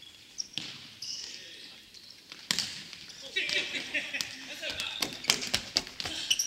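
Futsal ball kicked and bouncing on a hardwood gym floor, with sneakers squeaking and echo in the large hall. Sharp kicks come about half a second in, at about two and a half seconds, and in a quick run near the end, with players' voices between them.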